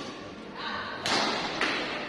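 Badminton doubles rally: rackets striking the shuttlecock, a sharp hit at the start and louder hits about a second in and again shortly after, with voices in the sports hall.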